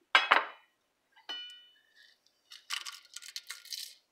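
Metal clinks against a metal pressure-cooker pot: two sharp ones at the start and a ringing one about a second in. Then comes a rapid crackling burst as chopped dried red chilies go into the hot oil.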